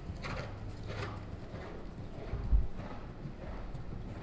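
Hoofbeats of a dressage horse moving over the arena's sand surface, a steady rhythm of soft strikes. A single low thump about halfway through is the loudest sound.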